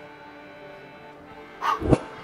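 Background music playing steadily, then a short, loud vocal burst near the end.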